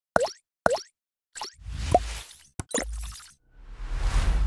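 Sound effects for an animated channel logo. Two quick pops with a falling pitch come first, then swelling whooshes with a deep low end, broken by a couple of sharp clicks.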